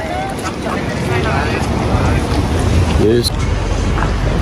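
Street ambience: passers-by talking in short snatches over a steady low rumble, with wind buffeting the microphone.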